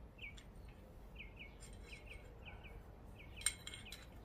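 Faint bird chirping: short falling notes, about two a second. Near the end come a few light metal clicks as a steel gib strip is fitted into the dovetail of a mini mill's Y-axis saddle.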